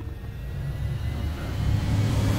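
Film-trailer sound-design rumble: a low drone that swells steadily louder.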